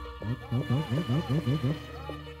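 A person's voice in quick rising-and-falling swoops, about four a second, over faint sustained music.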